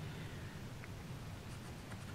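Faint scratching of a pencil marking dots on a sheet of card.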